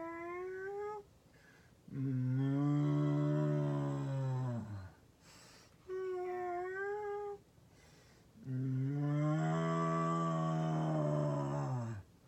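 A woman's voice imitating a cat and a cow in turn: a short, high meow, then a long, low moo, then the same pair again.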